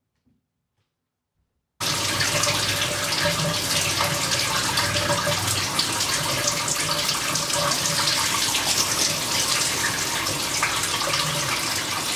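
Near silence, then a shower spray cuts in suddenly about two seconds in and runs steadily, water falling onto a person's head and face.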